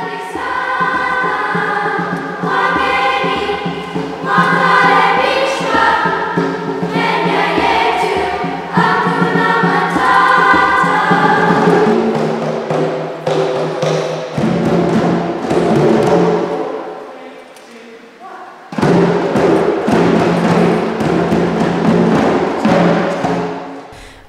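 A children's choir singing held notes. About twelve seconds in it gives way to a children's percussion ensemble playing djembes and drums, which drops away briefly a few seconds later and then comes back in.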